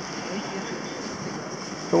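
Steady wind noise on the microphone over waves breaking on a beach, with a strong wind blowing.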